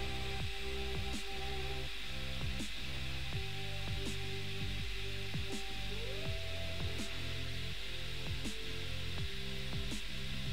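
Background music with held tones and a soft, regular accent about every second and a half; one tone slides up in pitch about six seconds in.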